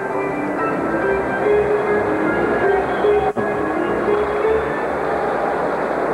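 Arena organ music playing held notes that change in steps, over a background of arena noise, with a brief dropout about halfway through.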